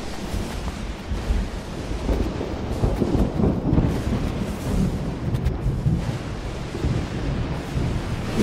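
A low, continuous rumble like rolling thunder, swelling and easing several times.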